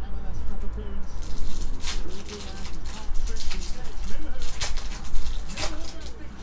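Foil trading-card packs crinkling as they are handled, and a pack wrapper being torn open: a run of sharp crackling rustles, the loudest near the end, over a steady low hum.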